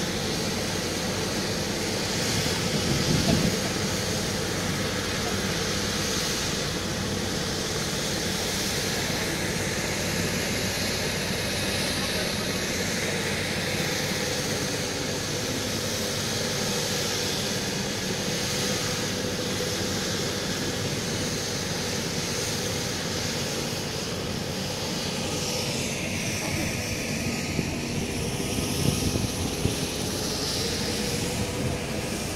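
Helicopter running on the ground, a steady engine and rotor noise; its whine dips and rises again near the end.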